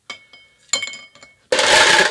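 Ice cubes dropped into a glass coupe, clinking against the glass: a few light ticks, then a sharp clink with a clear ringing tone. Near the end comes a louder, rougher burst of rattling noise.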